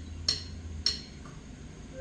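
Digital piano, the last low notes of a chord dying away, with two light key clicks about a third of a second and a second in; a new note sounds right at the end.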